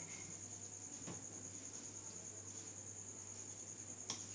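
Quiet room tone carrying a steady, high-pitched cricket trill, with a low hum beneath and a soft click about a second in.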